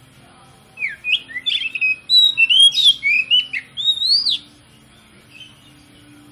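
Oriental magpie-robin singing: one phrase of varied whistled notes and quick rising and falling glides. It starts about a second in and stops after about three and a half seconds.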